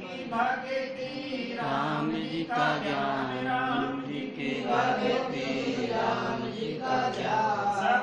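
Devotional chanting of a Hanuman bhajan, voices singing in repeated short phrases over a steady low held drone.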